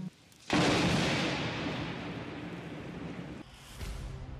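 Thunderclap sound effect for a lightning strike: a sudden loud crack about half a second in that dies away over about three seconds, with a short swell near the end.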